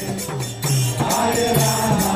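Kirtan: a crowd chanting a mantra together in call-and-response style to a mridanga drum and small jingling hand cymbals that keep a steady beat. The chanting thins out briefly just after the start and swells back in about half a second later.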